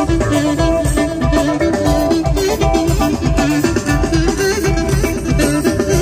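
Greek traditional folk (dimotiko) dance music, a lead melody moving in quick steps over a steady beat.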